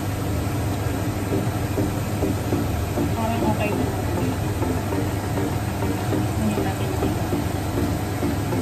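Kikiam frying in hot oil in a pan, with a steady sizzle and fine crackle over a low steady hum.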